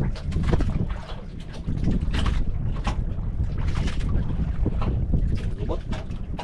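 Wind rumbling on the microphone aboard a small outrigger fishing boat at sea, with irregular short splashes of water against the hull.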